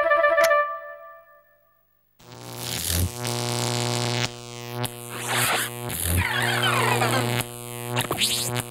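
Cartoon music: a short musical phrase fades out in the first second, then after a brief silence a steady electronic synthesizer drone sets in, with sweeping swells that rise and fall every second or so.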